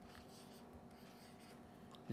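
Near silence with faint scratching of a stylus drawing on a pen tablet, over low room hum.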